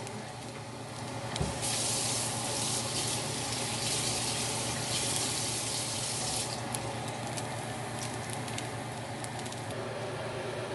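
Chopped bacon frying in coconut oil in a nonstick skillet: a steady sizzle with scattered small pops, swelling to a louder hiss for several seconds in the middle.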